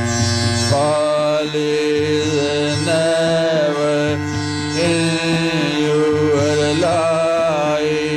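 Devotional song: a slow, long-held melody that bends and wavers over a steady drone, the melody coming in about a second in.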